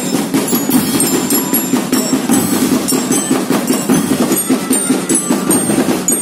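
School drum band playing: snare drums beating a steady rhythm while bell lyres ring out short, high metallic notes.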